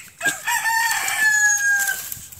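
A rooster crowing once: one long call that rises in at the start, holds steady and drops slightly in pitch near the end.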